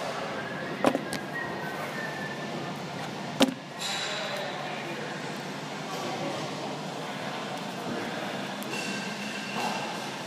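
Two sharp knocks, about a second in and again about three and a half seconds in, as the filming phone is handled and set in place. Faint voices murmur in the background throughout.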